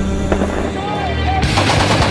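A belt-fed heavy machine gun opens up about a second and a half in and keeps firing in rapid automatic fire over a music soundtrack.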